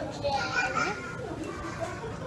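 Indistinct background voices, among them a child's high-pitched voice, over the general chatter of a dining room.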